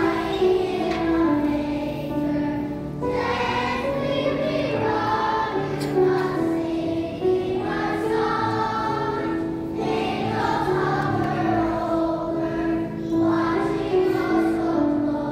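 Children's choir singing a song in phrases, accompanied by a grand piano.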